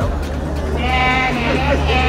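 A person's voice holding a long, wavering note that starts a little under a second in, over a steady low hum.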